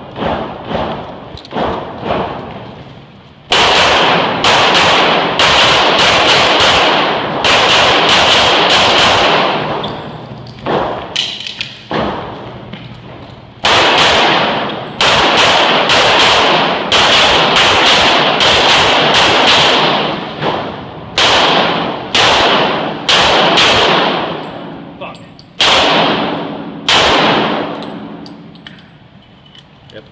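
Rapid strings of pistol shots from an STI 2011 in .40 S&W during a timed practical-shooting stage. Each shot rings out with heavy reverberation off the walls of an indoor range. A few quieter knocks come first, and the firing pauses for a few seconds midway.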